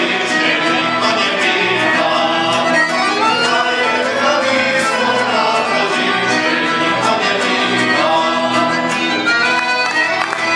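Live folk ensemble playing continuously. Accordion and clarinet carry the tune over keyboard, guitar and other plucked string instruments.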